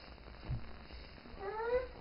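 Infant's short rising vocal sound, a single cat-like call that climbs in pitch about a second and a half in, preceded by a soft low bump.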